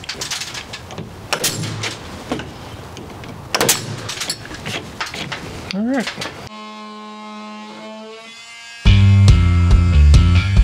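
Pneumatic nail gun firing several sharp shots into vinyl soffit panels over the first five seconds or so. Music then takes over: quiet at first, then loud rock with a heavy beat for the last second.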